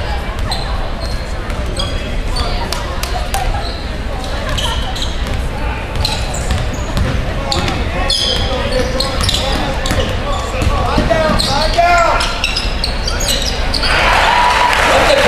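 A basketball dribbled on a hardwood gym floor, with short high squeaks of sneakers on the court, over the chatter of spectators and players echoing in a large gym.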